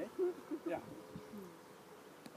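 A man's short, soft 'yeah' and murmured speech, then a quiet pause with a faint steady buzz in the background.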